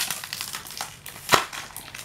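Clear plastic packaging bag crinkling and crackling as small hands pull and squeeze at it, trying to open it, with one sharp crack a little past halfway.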